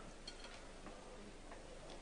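A pause in a speech in a large hall: faint room tone with a few faint ticks about a quarter second in.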